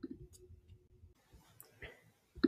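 Near silence with a few faint clicks of a computer mouse, the loudest right at the start as the settings panel is closed.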